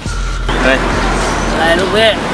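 Speech: a man's voice talking, over a steady background hiss of ambient noise.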